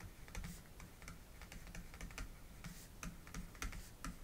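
Faint, irregular clicks and light scratches of a stylus on a pen tablet as words are handwritten, several taps a second.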